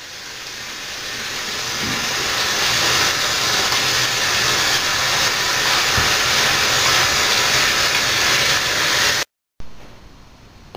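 Tap water running from a bathroom faucet into the sink while hands are washed under the stream. It grows louder over the first few seconds, holds steady, and cuts off suddenly near the end.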